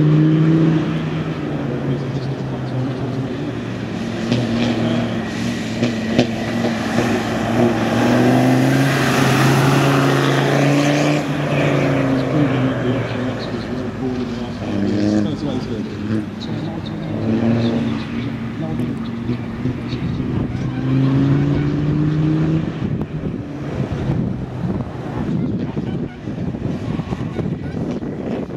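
Land Rover Defender 90's Td5 five-cylinder turbodiesel driven hard on a dirt track, its pitch rising and dropping back several times as it accelerates and lifts off. A louder rush of noise comes about nine to eleven seconds in.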